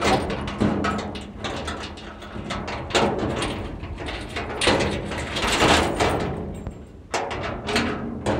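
A steel sheet gate rattles and clanks while its lock is worked by hand, with repeated clicks and knocks from a lock that is hard to open.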